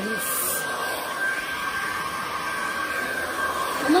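Handheld hair dryer running steadily while blow-drying hair: a constant rush of air with a steady high whine from its motor.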